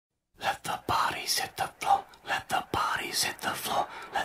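A person's voice close to the microphone, breathy and whispered, in short bursts.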